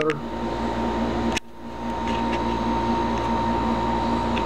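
Steady machine hum, fan-like, with a thin high whine held on one note; about a second and a half in it drops away abruptly and builds back up within half a second.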